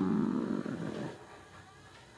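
A woman's drawn-out hesitation 'uh' trailing off into breath and fading out over about the first second, then quiet room tone.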